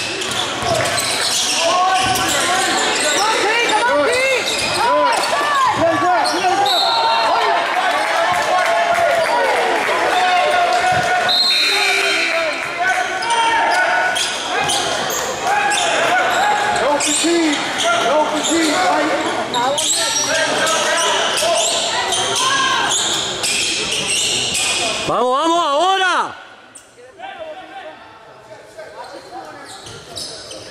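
Basketball game in a gym: the ball bouncing on the hardwood amid shouting voices, all echoing in the hall. About 26 seconds in, play stops and the sound drops much quieter.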